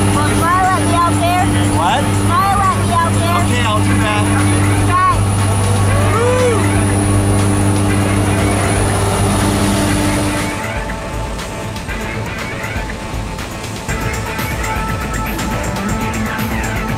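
Steady engine drone of a skydiving jump plane heard inside its cabin, with voices over it. About ten seconds in it cuts to music.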